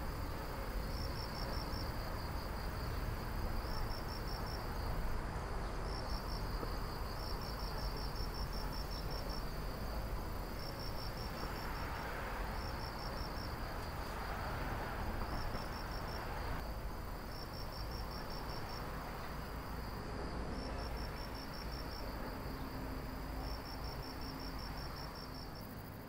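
Insects chirping in short, rapid pulsed trills that repeat every second or two, over a steady outdoor background hiss.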